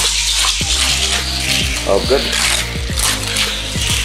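A Hot Wheels die-cast car runs fast along orange plastic track and through the loops, making a steady rattling hiss that starts suddenly as it is launched. Background music with a deep beat plays underneath.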